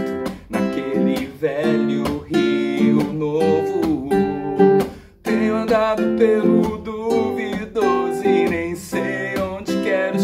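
Nylon-string classical guitar strummed in a steady rhythm, with a man singing over it. The sound drops away briefly about five seconds in, then the strumming and singing go on.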